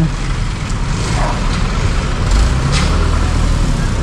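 Engine of a white light box truck running close by, a steady low rumble, with street traffic around it and a short hiss a little before three seconds in.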